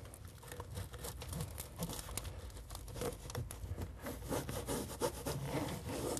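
Gloved hands rubbing and pressing flexible self-adhered flashing tape out around a round dryer vent on housewrap. The sound is a run of short, irregular rubbing strokes.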